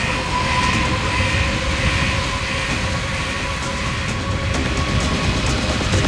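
Loud, steady machine-like rumble with a held tone and a rhythmic pulsing on top: a sci-fi soundtrack sound effect.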